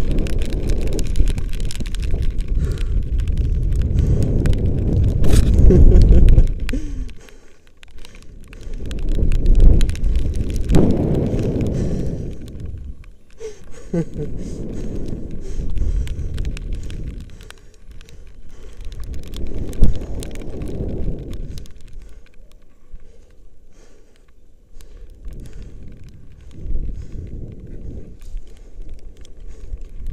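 Wind buffeting an action camera's microphone in swells every few seconds as a rope jumper swings back and forth on the rope, the swells weakening as the swing dies down. A short laugh comes about halfway through.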